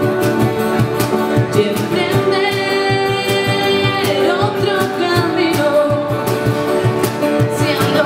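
A woman singing live over two strummed acoustic guitars, a cajón keeping a steady beat, and a keyboard. About two and a half seconds in she holds one long note with vibrato.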